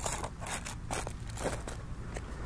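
Gear being handled on a plastic tarp: a small cardboard box is slid across and set down, with a scatter of light scrapes, rustles and clicks.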